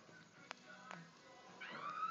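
A Maltese puppy chewing a bone: a few faint clicks from its teeth on the bone, then a high-pitched whine from the puppy starting near the end.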